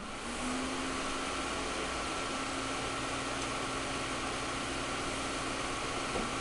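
A fan coming on at the very start and then running steadily: an even rush of air with a steady low hum.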